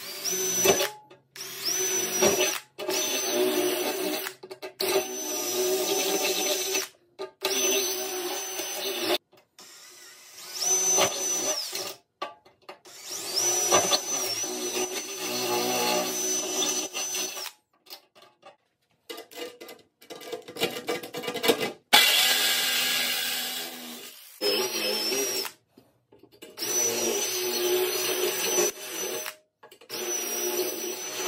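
Cordless drill boring holes through the thin steel wall of an ammo can, in repeated runs of one to four seconds with short stops between them and a high motor whine through each run. The holes are starter holes for cutting out an oven door slot with a jigsaw.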